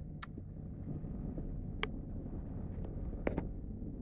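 Black Hawk military helicopter flying over, its rotor and engine a low steady rumble heard through a closed office window. Three short sharp clicks stand out, about a quarter second in, near the middle, and near the end.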